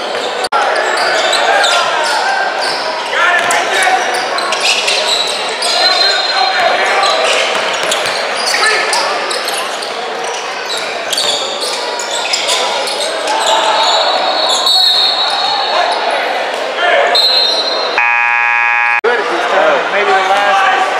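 Indoor basketball game in a large echoing gym: a basketball bouncing and players and spectators calling out. Near the end a buzzer sounds once for about a second.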